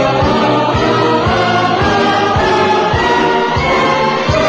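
Live band music with many voices singing together like a choir over a steady drum beat.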